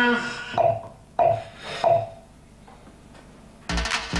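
A longer voiced sound followed by three short vocal bursts, then a gap, and near the end an electronic dance beat with deep, booming kick drums kicks in.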